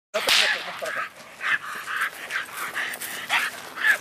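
Leashed shepherd-type dog barking repeatedly, about two barks a second, loudest in the first half-second.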